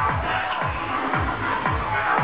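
Live dark electro (aggrotech) music played loud over a PA, carried by a fast, steady electronic kick-drum beat with synth lines above it.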